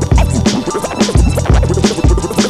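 Hip hop beat with turntable scratching over a steady, heavy kick drum.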